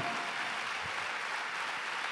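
A large seated congregation applauding, with steady, even clapping.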